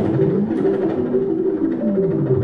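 Live electronic music: a short repeating melodic figure over a deep bass, with a low tone gliding down and back up, and a sharp hit right at the start.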